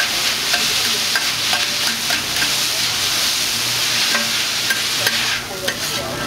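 Yakisoba noodles frying on a hot flat steel griddle, a steady sizzle with metal spatulas scraping and clicking against the plate as they are tossed and chopped. The sizzle thins out near the end.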